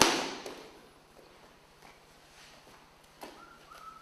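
A body thudding onto a foam training mat as a partner is thrown with a leg sweep; the landing is loudest right at the start and dies away over about a second.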